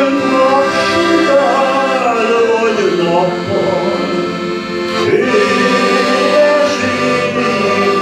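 Piano accordion playing a melody over sustained chords as accompaniment to a Hungarian song.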